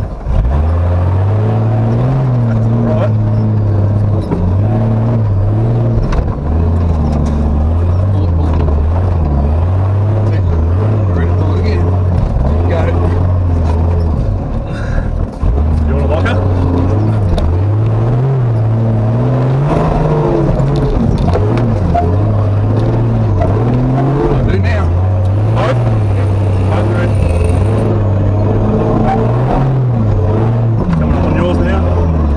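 Turbocharged Nissan Patrol GQ's TB42 straight-six petrol engine working hard as the truck drives a rough off-road track, its revs rising and falling repeatedly with throttle, with a brief lift off the throttle about halfway through.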